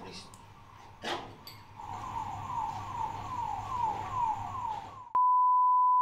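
Electronic sound effect: a faint click, then a run of short beeps each falling in pitch, about two a second. About five seconds in, a steady one-pitch beep takes over and is the loudest part.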